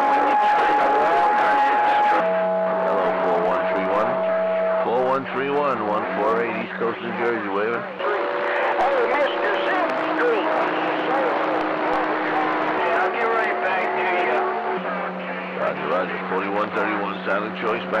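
CB radio receiving skip on channel 28: garbled, unintelligible voices over a hiss of band noise, with steady whistling tones from stations beating against each other that jump to a new pitch every two or three seconds.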